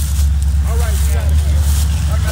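A 2020 Dodge Charger Scat Pack Widebody's 6.4-litre Hemi V8 running with a steady deep rumble, with faint voices over it.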